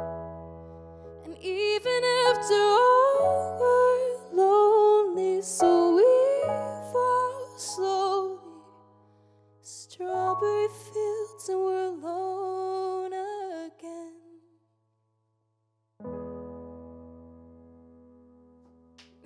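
Solo piano chords under a woman's sung melody with bending runs; the voice drops out about fourteen seconds in, and after a short silence a final piano chord rings out and fades.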